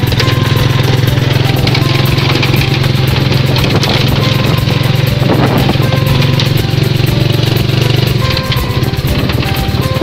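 Motorcycle engine of a tricycle running steadily under way, with music playing over it.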